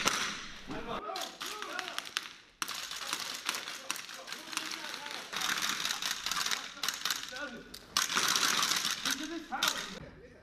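Bursts of rapid rifle fire, many sharp cracks close together, with muffled shouting in the gaps.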